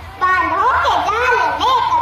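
A young girl reciting a Hindi poem into a microphone, her voice rising and falling in a sing-song recitation, starting a moment in after a brief pause.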